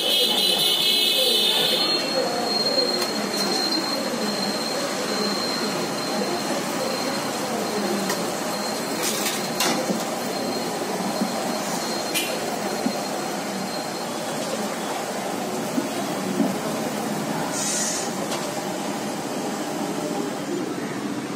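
Steady street noise of passing motorbike traffic and indistinct voices. Hot frying oil in a large kadai sizzles for the first couple of seconds.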